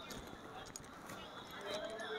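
Faint background voices with a few short, light clicks or taps.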